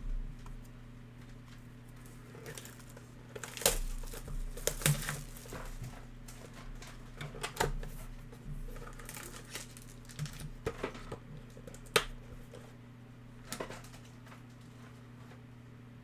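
Handling of a cardboard trading-card hobby box being opened and a foil card pack picked up: scattered sharp clicks and short crinkles of cardboard and foil, over a steady low hum.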